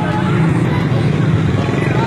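A small motorcycle engine running steadily close by, a constant low throb.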